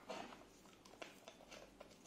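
Near silence with a few faint clicks and rubs: a white plastic screw cap being picked up and fitted onto a small glass media bottle by gloved hands.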